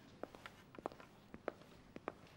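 Faint footsteps and light clicks on a hard floor, about eight short taps at uneven spacing.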